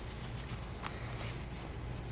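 Faint handling sounds as fingers work and hand-stitch a fabric pin cushion packed with crushed walnut shells: a few soft clicks and rustles over a steady low hum.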